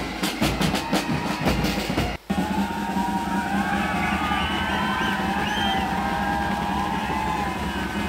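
A pipe and drums band playing, with steady drum beats to the fore, for about two seconds. After a sudden break, a crowd cheering and shouting over a low steady hum.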